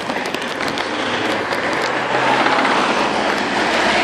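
Road traffic passing close by: tyre noise with an engine hum that comes in about halfway and swells toward the end as a truck approaches.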